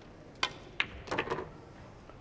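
Pool balls clicking: the cue tip strikes the cue ball on a draw shot, and about half a second later the cue ball hits the object ball. A brief, softer rattle follows about a second in.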